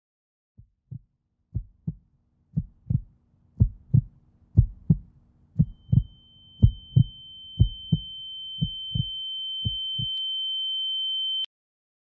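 Heartbeat sound effect: pairs of low thumps about once a second, slowly fading and stopping about ten seconds in. A high steady tone comes in about halfway, grows louder and cuts off suddenly shortly before the end.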